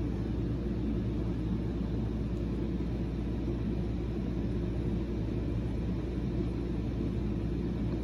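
Steady low background hum and rumble, with no distinct events.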